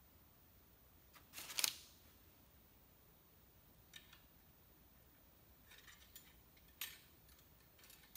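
Steel cleaning rod of an SKS rifle scraping and clicking against the rifle's metal as it is worked into place under the barrel: one louder metallic scrape about a second and a half in, then a few faint clicks and a sharp tick near the end.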